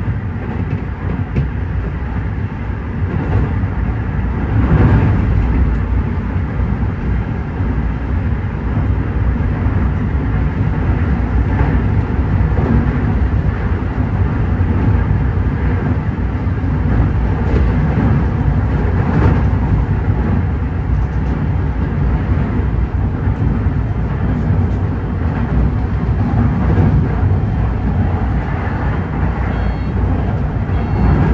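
Electric commuter train running along the line, heard from the cab: a steady low rumble of wheels and running gear, with a few faint clicks.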